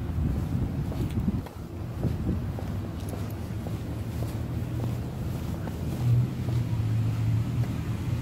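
Wind buffeting a handheld phone microphone while walking outdoors, over a vehicle engine running with a steady low hum that grows louder over the last two seconds.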